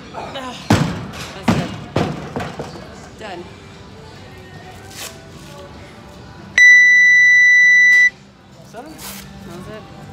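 A loaded barbell with bumper plates dropped from overhead hits the gym floor with three heavy impacts and bounces in the first two seconds. About six and a half seconds in, a gym timer sounds one long, loud electronic beep of about a second and a half, signalling the end of the workout's time cap, over background music.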